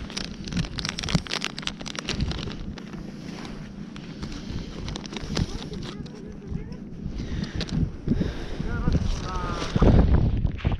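Close handling noise from gloved hands working with a plastic packet of wax worms and fishing tackle: rustling and a dense run of clicks in the first few seconds, then scattered ticks, with wind on the microphone.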